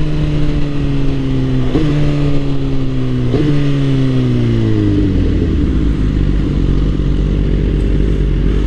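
Suzuki GSX-R1000 inline-four engine slowing down under engine braking, its pitch falling steadily, with two quick throttle blips on downshifts about two and three and a half seconds in. The engine note then fades into a low rumble.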